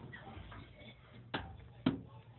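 Two sharp knocks about half a second apart, the second louder, from someone making their way out through a submarine's exit door onto the deck.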